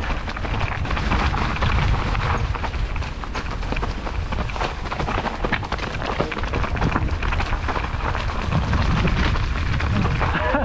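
Wind rushing over the bike-mounted camera's microphone as a steel hardtail mountain bike descends fast, its tyres rolling over dry leaves and loose stones and the bike rattling and clattering with many quick knocks throughout.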